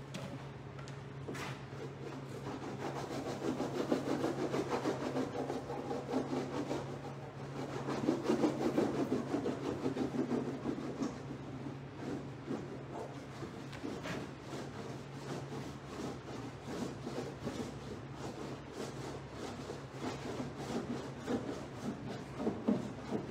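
Paint being scrubbed onto a large painting's surface with rapid back-and-forth rubbing strokes, heaviest in two spells about three and eight seconds in, with a couple of light clicks. A steady low hum sits underneath.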